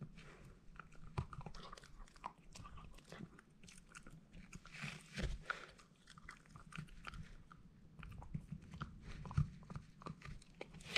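A small dog chewing close to the microphone: irregular wet crunches and bites, with a louder run of crunching about halfway through.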